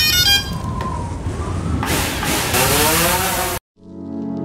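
Sound effects for an animated logo intro. A brief chiming hit opens it, then a rumbling noise, then a loud hiss with a rising whine that cuts off suddenly near the end. Music starts right after.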